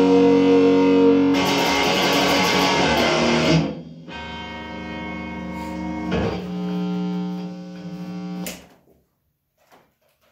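Stratocaster-style electric guitar played loudly in full chords. A little over three seconds in, it drops to quieter ringing chords, restruck once about six seconds in. The chord is cut off short near the end.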